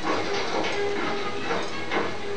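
Film soundtrack: orchestral music playing, with repeated noisy accents over it.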